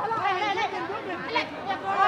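Several voices talking and calling over one another, with no single voice standing out.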